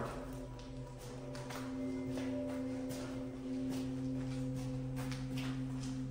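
A low, steady droning music bed of held tones, with faint scattered footsteps.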